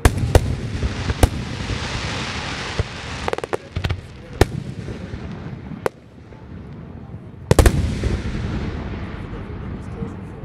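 Aerial fireworks shells bursting in a finale: about a dozen sharp bangs at uneven intervals, with a crackling hiss between them. The loudest bangs come as a close pair about three-quarters of the way through.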